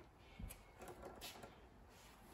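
Near silence: room tone, with a couple of faint clicks from hands handling a bench-top valve spring tester.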